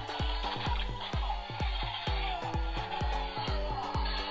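Battery-operated Venom action figure playing electronic dance music with a fast, steady beat.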